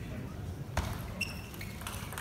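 Table tennis ball struck back and forth in a serve and rally: sharp clicks of the ball on bat and table, the first about three quarters of a second in and then several more a few tenths of a second apart, some with a short high ping.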